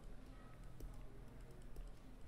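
Faint light ticks and taps of a stylus writing on a tablet screen, over a low steady hum.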